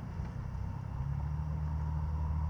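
A low, steady motor hum that becomes stronger and steadier about a second in.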